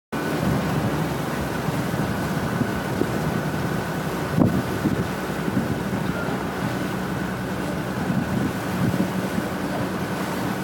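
Motor cruiser under way: a steady engine hum under the rush of water and wind buffeting the microphone, with a faint steady whine above. A single knock comes about four and a half seconds in.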